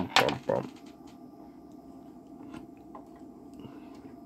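Test-lead banana plugs being pulled and pushed into the input jacks of a UNI-T UT8805E bench multimeter, a few sharp clicks in the first second, moving the leads from the wrong terminals to the right ones. After that, only a steady low hum.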